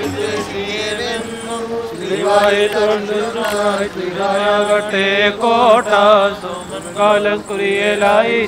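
Liturgical chanting in an Orthodox service: a voice sings wavering, ornamented phrases over a steady held note. The phrases start about two seconds in.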